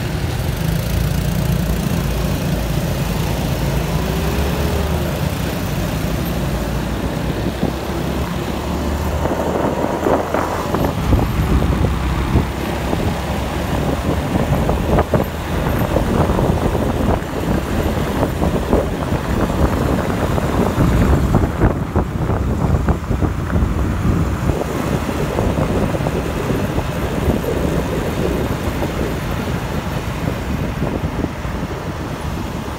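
Motor scooter engine idling while stopped in city traffic, then pulling away about nine seconds in and riding on, with wind rushing on the microphone and the surrounding traffic.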